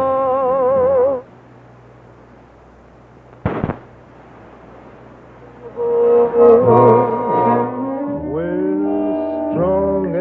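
A male vocalist with a big band holds a long note with wide vibrato that breaks off about a second in. A few seconds of low tape hiss follow, with a single sharp click partway through. Then the full big band with brass comes back in, a little before the end.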